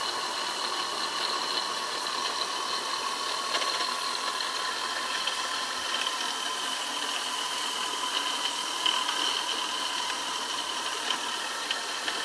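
Vintage 1930s model steam turbine running steadily on steam at about 55 psi: a continuous hiss with steady high-pitched whining tones over it.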